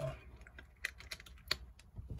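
A few faint, sharp clicks and taps at irregular intervals.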